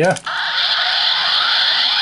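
Electronic sound effect played through the small speaker of a Delta Squad Megazord (Dekaranger Robo) robot toy, set off by a button press on the figure as its lights come on. It is a steady, high, hissy electronic sound lasting about two seconds.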